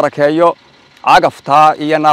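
Only speech: a man talking, with a short pause about half a second in.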